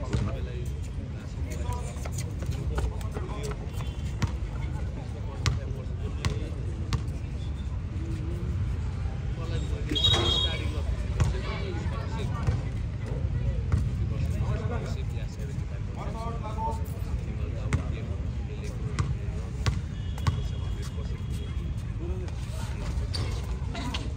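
A basketball bouncing on a hard outdoor court during live play, sharp irregular bounces, with players' and spectators' voices in the background.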